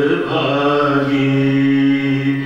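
A man's voice singing a Swaminarayan devotional bhajan, holding one long, nearly steady note.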